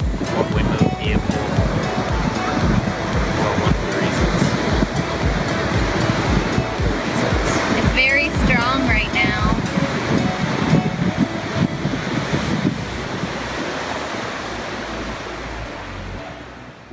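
Ocean surf and wind on the microphone under background music with a steady beat; the music fades out near the end.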